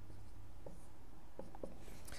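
Dry-erase marker writing on a whiteboard: a few short, faint strokes, around the first second and again near the end.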